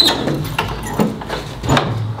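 A large old key working in the lock of a heavy wooden church door: a string of metallic clicks and knocks as the lock is turned and the door is worked loose.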